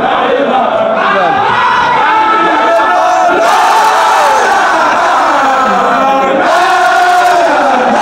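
A large crowd of men chanting a zikr together, loud and unbroken, many voices overlapping with drawn-out, gliding shouted cries.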